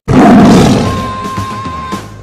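Tiger roar sound effect, sudden and loud at the start and fading over about a second, laid over music in which a steady high note is held from about a second in.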